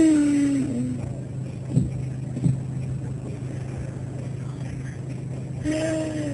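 A steady low engine hum, with a drawn-out falling voice at the start and again near the end, and two short knocks about two seconds in.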